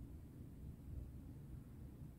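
Quiet room tone: a faint, uneven low rumble with no distinct sounds.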